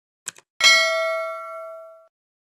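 Two quick click sound effects, then a bright bell ding that rings out and fades over about a second and a half: the mouse-click and notification-bell sounds of a subscribe-button animation.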